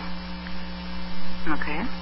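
Steady electrical hum on a recorded telephone line during a gap in the conversation, with a brief faint voice near the end.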